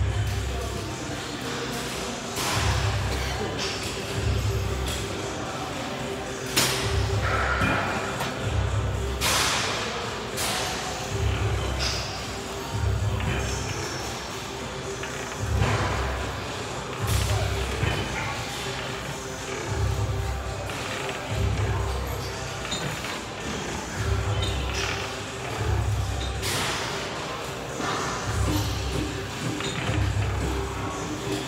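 Background music with a heavy, pulsing bass line playing in a large room, with a few sharp thuds or noises scattered through it.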